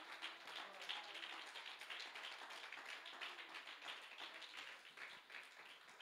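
Scattered, irregular hand-clapping from a church congregation, faint, thinning out near the end.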